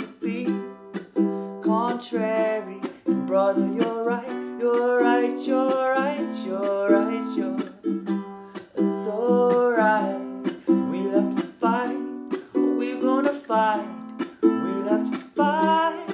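Ukulele strummed in a steady rhythm, with a man singing the melody over the chords in a small room.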